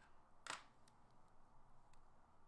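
Near silence: faint room tone, with one light click about half a second in and two fainter ticks later.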